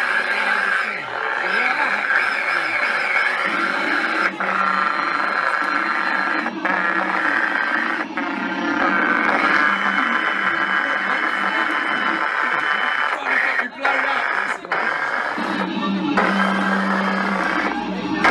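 Live harsh noise music: a dense, continuous wall of distorted electronic noise with steady whining tones and sweeping pitch glides, broken several times by abrupt short cut-outs.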